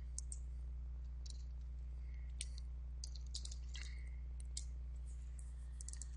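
Faint, irregularly spaced clicks of computer keys and a mouse while a spreadsheet formula is typed, over a steady low hum.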